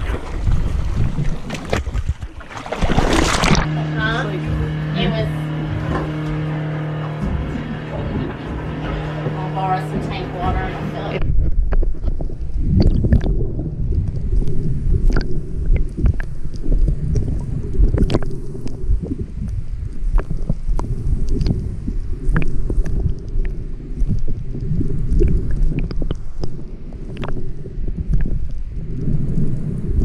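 Underwater sound picked up by a camera held beneath the surface while snorkeling: a muffled low rumble with many scattered clicks and crackles. For the first ten seconds or so, before it, there is a steady hum of several tones, with a sharp noisy burst about three seconds in.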